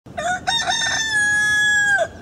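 Rooster crowing: a few short notes, then one long held note that drops in pitch at the end.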